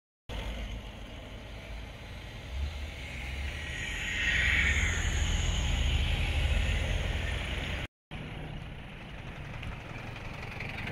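Cars driving past on a road, engine rumble and tyre noise; one passes close, loudest in the second half, and the sound breaks off briefly near the end before the traffic goes on.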